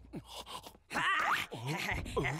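Wordless cartoon character vocalising: a few short moaning sounds that slide up and down in pitch, the loudest about a second in, ending in a quick rising squeak.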